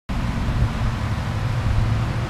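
Steady low rumble with a faint hiss: the background noise of a large workshop, with no distinct event.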